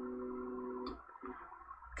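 NEMA17 stepper motor on a TMC2209 driver whining with a steady pitched tone as it drives the X carriage during sensorless homing, cutting off abruptly a little under a second in when the carriage reaches the end of travel. A brief, weaker second whine follows: the short retraction move after homing.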